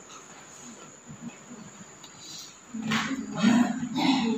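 Quiet room tone at first, then brief, indistinct voice sounds starting about three seconds in.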